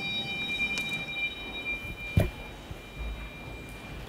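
A small bell, struck just before, rings on with several high steady tones that slowly fade away. A single knock comes about two seconds in.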